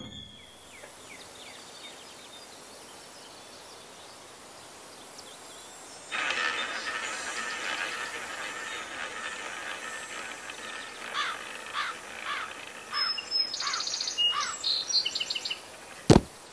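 Countryside ambience: a faint steady hiss, then from about six seconds in a fuller outdoor background with birds chirping, ending in a run of quick falling chirps.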